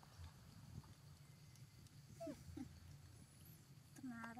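Near silence with a steady low hum, broken a little over two seconds in by two faint, short animal squeaks.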